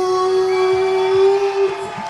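A ring announcer's voice holding one long, drawn-out shouted vowel on the winner's name, steady in pitch, breaking off just before the end.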